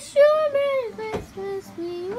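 A high-pitched voice holding a long sung note that slides down, followed by a few shorter, lower notes. A single sharp knock sounds about a second in.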